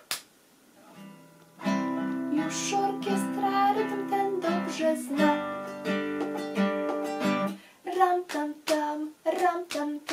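Classical guitar strummed in ringing, held chords, starting after a quiet second and a half and lasting about six seconds. Near the end, short sung syllables follow one another in a steady rhythm.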